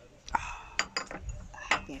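Ceramic cups and saucers clinking: about four sharp, ringing clinks.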